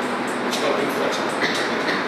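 A man's voice from a projected video, played over hall loudspeakers and heard distant and muffled under a steady hiss and rumble.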